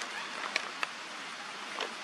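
A few light clicks and knocks of small items being handled while rummaging through a gear bag, three in all, over a steady outdoor background hiss.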